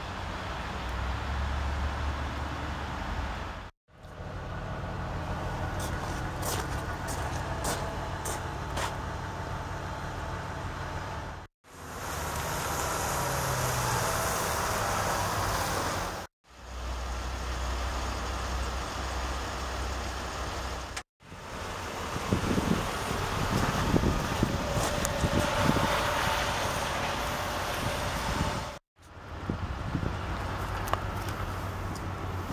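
Steady outdoor rumble of a parking lot with distant traffic, cut into several short pieces by abrupt drops to silence every few seconds. A few light clicks come in the first third, and irregular crunching near the end.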